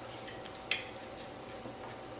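A fork clinks once, sharply, against a dinner plate a little under a second in, with a few fainter clicks of tableware, over a faint steady hum.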